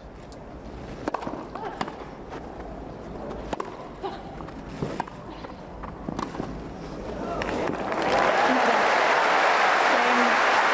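Tennis rally on a grass court: a string of sharp racket-on-ball hits, roughly a second apart, over a low crowd murmur. Crowd applause then swells from about seven seconds in and is loud by eight, as the point ends.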